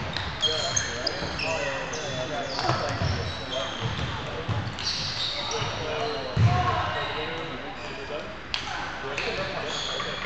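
Table tennis balls clicking off tables and paddles, many short high-pitched ticks at uneven spacing from more than one table at once, mixed with a few dull thumps, the loudest about six and a half seconds in.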